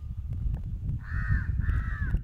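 Two harsh bird calls in quick succession starting about a second in, over a steady low rumble.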